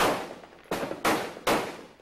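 Gunfire: three sharp shots a little under a second apart, each echoing away before the next, the first the loudest.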